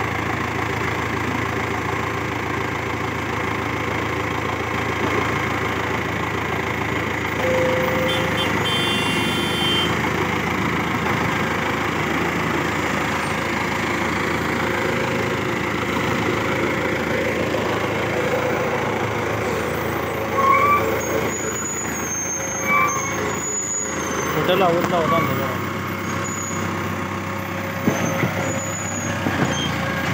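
Mahindra Arjun tractor's diesel engine running steadily under heavy load as it slowly hauls two trailers of sugarcane.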